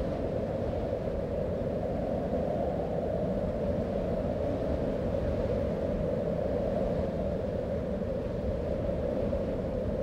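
A steady, deep rumble with no pitch or rhythm, unchanging throughout: an ambient drone under a title card.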